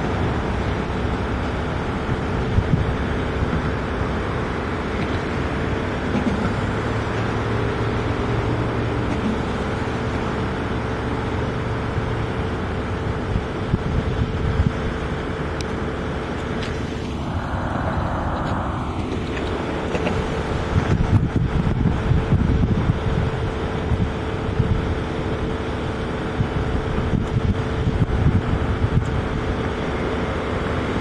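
Steady din of road traffic with a constant hum running under it, and a brief louder rush of noise a little past the middle.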